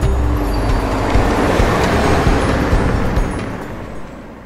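Convoy vehicles driving in: a rushing road-and-engine noise that builds and then fades away toward the end, with low background music underneath in the first half.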